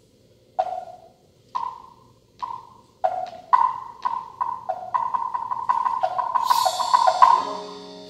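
Struck percussion at two alternating pitches, wood-block-like: single strokes about a second apart that speed up into a rapid roll. A cymbal wash swells near the end, and low bowed string notes come in at the very end.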